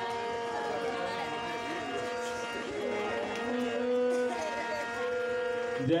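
Harmonium holding long sustained notes that shift pitch now and then, with voices over it.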